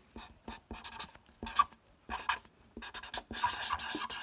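Sharpie permanent marker writing on a sheet of paper, in a series of short, uneven strokes.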